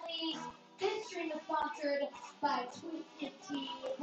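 A woman singing live into a microphone over backing music, amplified through PA speakers in a small room.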